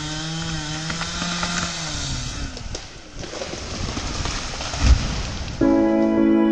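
Two-stroke chainsaw running at high revs with a wavering pitch as it finishes the felling cut on a big larch, cutting off about two seconds in. Then the tree comes down with a crackle of breaking branches and a heavy thud as the trunk hits the ground near the end.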